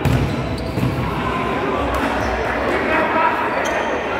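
A futsal ball being kicked and bouncing on a hard court: several sharp knocks, with players' shouts and calls around them.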